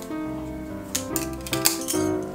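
Bangles clinking against each other as they are slid onto a wrist, a few sharp clinks in the second half, over background music with steady piano-like notes.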